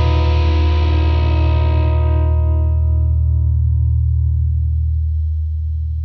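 Stoner/doom metal: a heavily distorted electric guitar chord over deep low notes, held and left to ring. Its bright upper ring fades away over a few seconds while the low notes keep sounding.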